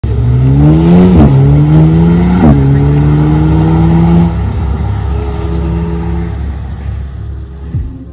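Alpine A110's turbocharged 1.8-litre four-cylinder accelerating hard, its pitch climbing and dropping at two quick upshifts about one and two and a half seconds in, then holding steady and fading as the car pulls away. A deep thump sounds near the end.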